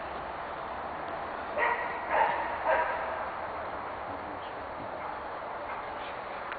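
Dog barking three times in quick succession, about a second and a half in.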